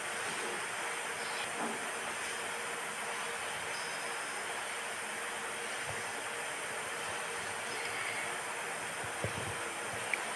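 Steady, even hiss of background noise, with no voices.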